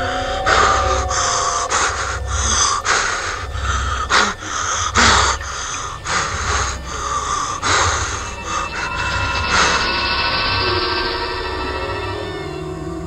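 A person panting hard while running, loud quick breaths about one every two-thirds of a second over a low, pulsing rumble. The breathing stops about ten seconds in, leaving a steady hiss with faint held tones.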